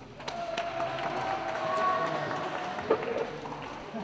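Indistinct voices in a reverberant hall, with two sharp clicks near the start and a single knock about three seconds in.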